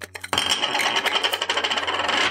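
A plastic lens end cap being twisted onto a camera lens: a loud, dense scraping made of rapid fine clicks, starting shortly after the beginning and going on for about two seconds.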